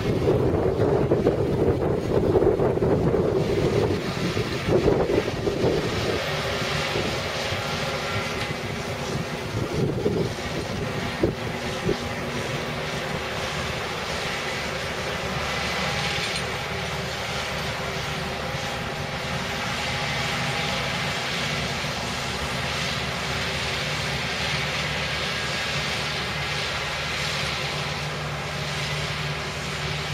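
Case tractor's diesel engine running steadily under load while pulling a harrow through dry soil. Wind buffets the microphone over the first few seconds, then the engine hum holds even.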